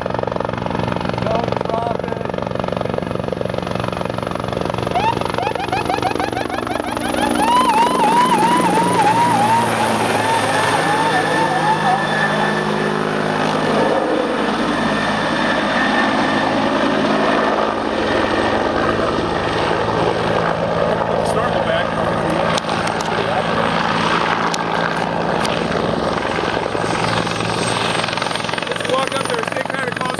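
Helicopter passing low overhead: a steady rotor beat whose pitch drops about seven seconds in as it goes over. It is loudest for a few seconds after that, then keeps running close by.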